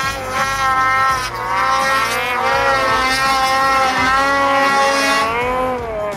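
Snowmobile engine running at high revs, its pitch wavering up and down as the throttle is worked, then dropping away just before the end.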